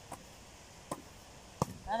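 Hands slapping a basketball as it is volleyed back and forth: three sharp hits, the last the loudest. A voice starts right at the end.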